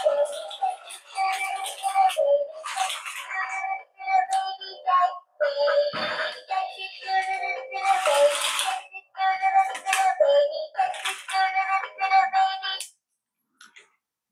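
RC Cute Crab toy's music chip playing a children's song through its small built-in speaker, thin and high-pitched with a synthetic singing voice. It stops suddenly about a second before the end.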